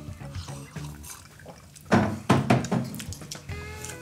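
Background music playing quietly, with a short noisy liquid sound about halfway through and a smaller one just after it.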